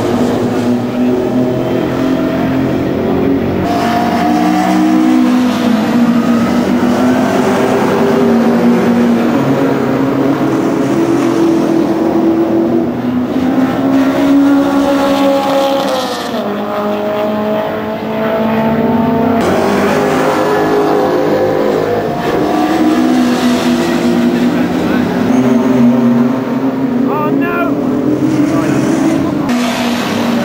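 Classic GT race cars racing past one after another. Their engine notes rise and fall in pitch as they accelerate and go by, with a sharp drop in pitch about halfway through.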